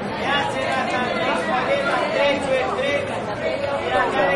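Several voices talking over one another in a steady babble, no single voice standing out clearly.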